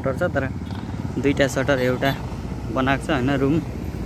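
A man talking over the steady low hum of a vehicle engine running underneath.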